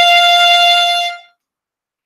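A single long bowed violin note, F played with the low first finger on the E string, held steady in pitch and stopping a little over a second in.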